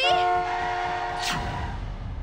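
Vehicle horn sounding one long blast of about a second and a half, several steady pitches together, as a warning to a pedestrian in the car's path.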